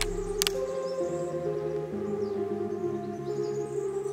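Background music: a slow ambient piece of sustained tones that shift about once a second, with one sharp click about half a second in.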